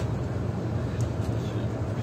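Steady low rumble of a coach bus's engine and road noise, heard from inside the driver's cab while cruising along a road, with a brief click about a second in.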